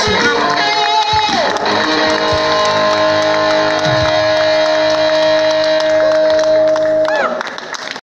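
Live band with electric guitar, drums, keyboards and a female singer playing. From about two seconds in one long note is held, then near the end the music drops away.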